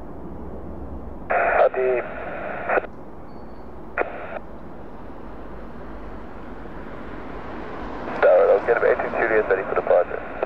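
Air traffic control radio: two short, clipped transmissions about a second and a half and four seconds in, then a longer exchange starting near the end, all thin and narrow as through a scanner. Under them a steady low rumble of distant jet aircraft.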